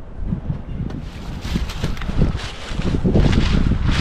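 Wind buffeting the microphone: a loud, uneven rumble that gusts stronger in the second half.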